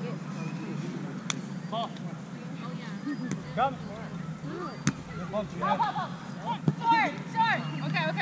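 Players' voices calling and chatting at a distance across an outdoor volleyball game, livelier in the second half, over a steady low hum, with a few sharp slaps scattered through.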